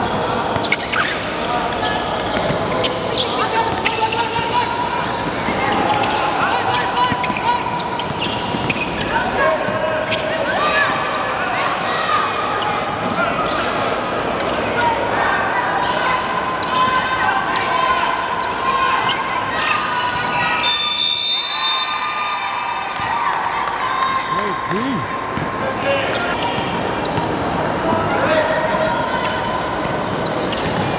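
Basketball being dribbled and bounced on a hardwood gym floor during play, with players' voices calling out across an echoing hall. A brief high squeal cuts through about two-thirds of the way in.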